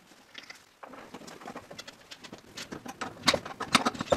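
Quick metallic clicks and scraping of a wrench and brass gas fitting being worked at the gas inlet on the back of a gas range. They start about a second in and grow louder and denser near the end.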